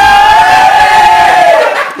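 A loud, high-pitched yell held as one long note for nearly two seconds, dipping in pitch just before it ends.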